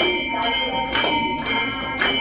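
Temple bells ringing on and on for an aarti, with sharp strokes of claps or bell strikes about twice a second.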